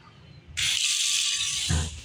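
Automatic sensor faucet turning on about half a second in: water running in a steady hiss. A low thump comes near the end as the hiss drops away.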